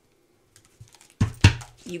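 Faint ticking, then two sharp clicks with a dull knock a little over a second in, from long acrylic nails and a deck of tarot cards handled right at the microphone.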